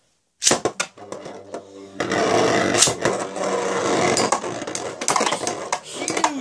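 A few clicks, then from about two seconds in two metal-wheeled Beyblade spinning tops launched into a plastic stadium, spinning and grinding on the floor with a sharp clash soon after landing.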